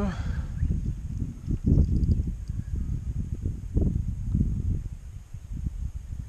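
Wind buffeting an action camera's microphone on an open kayak: an uneven low rumble that gusts louder about two seconds in and again near four seconds.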